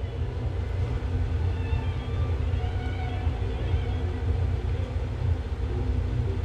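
Steady low rumble of background machinery, with faint steady tones above it.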